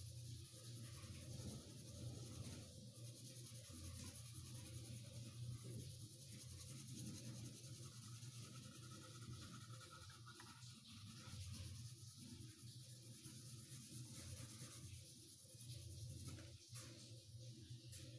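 Faint scratching of a brown coloured pencil shading back and forth on drawing paper, over a low steady hum.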